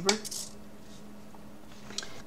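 A sharp click at the start and another near the end as a small plastic RC receiver and its wire connectors are handled, over a faint steady hum.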